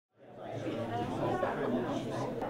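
Several people talking at once in a room, a babble of overlapping conversation that fades in over the first half second.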